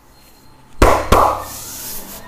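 Two sharp, loud slaps of a hand on bare skin during a back massage, about a third of a second apart, followed by a steady rubbing of the palm over the skin.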